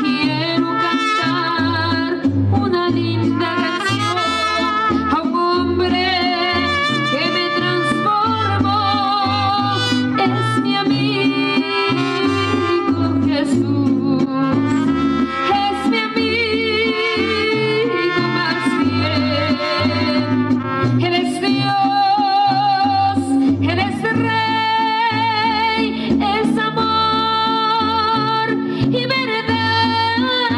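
Mariachi trio playing a serenade: a woman singing the melody over a guitarrón's stepping bass line and a strummed guitar.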